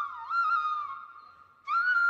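Background music: a solo flute playing a slow melody of held notes with small pitch bends. One note fades away about one and a half seconds in, and a new note begins just before the end.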